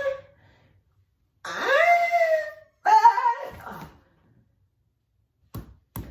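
A young man moaning in long, rising cries as he strains through push-ups, two in a row after the end of a previous one. Near the end comes a short knock as he drops onto the floor.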